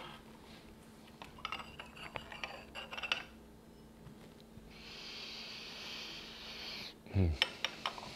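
Light porcelain clicks of a gaiwan and its lid being handled, then tea poured from the gaiwan into a glass pitcher: a steady stream of liquid for about two seconds that stops suddenly. A few more clinks of the lid near the end.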